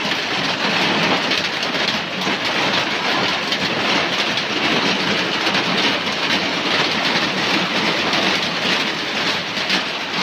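Heavy rain pouring down in a loud, steady, dense hiss of drops splashing on a concrete floor and wall.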